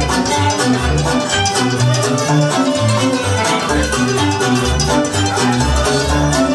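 Romanian folk dance music for a circle dance, played loud with a steady beat in the bass.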